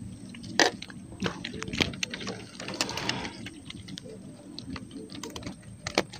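A small, just-landed mullet being handled: irregular light clicks and knocks, the sharpest about half a second in.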